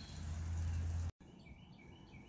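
A low steady rumble for about the first second that cuts off suddenly, then faint outdoor ambience with several short bird chirps.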